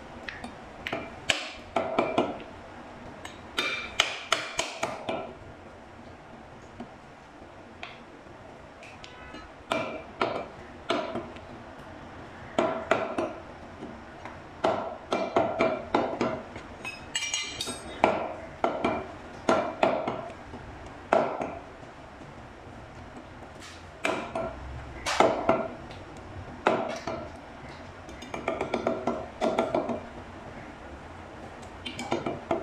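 A steel meat cleaver chopping beef on a thick wooden chopping block: sharp strikes in quick runs of several at a time, with short pauses between runs, each strike leaving a brief metallic ring.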